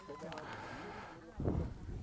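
Faint, distant voices of players and spectators calling across an outdoor football pitch, with a brief nearer voice about a second and a half in.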